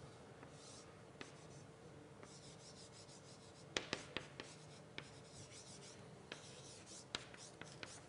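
Chalk writing on a blackboard: faint scratching strokes with sharp taps of the chalk against the board, the loudest a cluster of taps about four seconds in.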